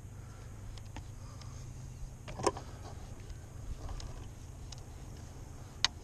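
Electric trolling motor humming steadily, with a sharp click a little before halfway and another near the end.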